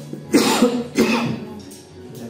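A person coughing twice, about a third of a second and a second in.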